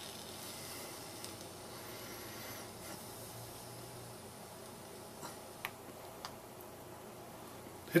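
A long, faint drag on a Revolution V2 box-mod e-cigarette with a cartomizer: a soft, steady hiss of air drawn through the device, with a few faint clicks in the second half.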